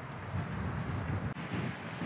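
Wind buffeting an outdoor microphone: a steady low rumble with a hiss over it.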